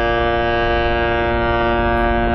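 Harmonium holding one steady chord, its reeds sounding without a break.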